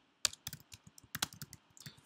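Typing on a computer keyboard: a quick, irregular run of keystrokes that begins a moment in.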